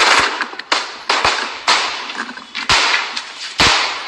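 Pistol shots fired in rapid, irregular succession, about eight in four seconds. Each is a sharp crack with a ringing tail, and two come almost together near the end.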